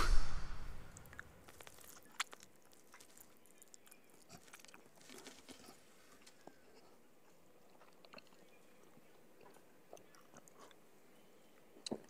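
A person eating noodle soup with chopsticks as quietly as possible. Faint scattered small clicks and soft eating sounds, with a sharper click about two seconds in and a quick pair of clicks near the end.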